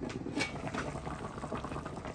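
A pot of water boiling on a gas stove, a steady bubbling with one light knock about half a second in.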